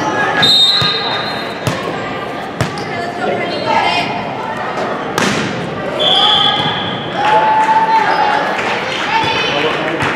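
Volleyball rally in a gym: sharp ball hits, the loudest about five seconds in, among voices of players and spectators echoing in the hall. High squeaks of about a second each sound near the start and again about six seconds in.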